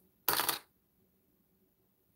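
A single short clatter of a small hard object on the tabletop, about a quarter second in, lasting a third of a second.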